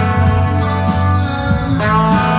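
Bacchus BST-2 RSM Stratocaster-style electric guitar played through an amplifier: a sustained single-note lead line, with a note bent upward near the end.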